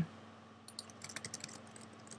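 Faint clicking of computer keyboard keys typed in quick succession, starting about a third of the way in.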